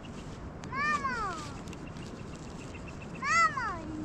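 Goat kid bleating twice, about a second in and again about three and a half seconds in; each call is short, rising and then falling in pitch.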